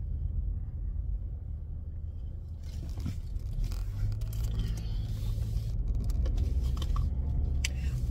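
Steady low rumble of a car driving, heard inside the cabin: engine and tyre noise from the road.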